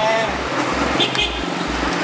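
Busy street traffic, with motorbikes and cars passing, heard as a steady background hum. A low pulse repeats about twice a second underneath.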